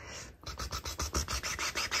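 A fast, even run of taps, about eight a second, like a drumroll, starting about half a second in. It builds suspense just before the last-place name is announced.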